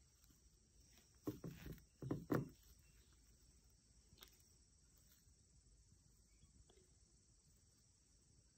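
Near silence, with a few brief, faint rustles and knocks of handling between about one and two and a half seconds in, and a couple of tiny clicks later.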